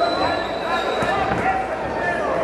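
Voices shouting in a large hall during a boxing bout, with dull thuds from the ring.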